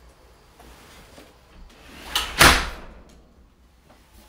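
A single loud thump with a brief rustle, about two and a half seconds in.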